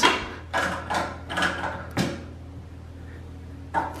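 A spanner and the extruder's push-in fitting being handled on a 3D printer: several short knocks, clicks and scrapes in the first two seconds, then quieter handling, over a steady low hum.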